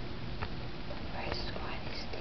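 Steady hiss from a handheld camera's microphone, with two faint handling clicks, one about half a second in and one past the middle.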